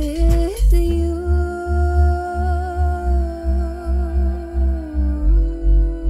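A woman humming long wordless held notes over a looped electronic beat with a pulsing bass, the notes stepping slightly lower about five seconds in.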